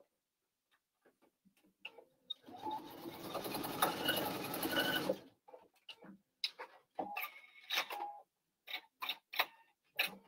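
PFAFF sewing machine running for about two and a half seconds, stitching a short stretch along a hand-folded hem edge, starting a couple of seconds in. It is followed by a scatter of light clicks and taps.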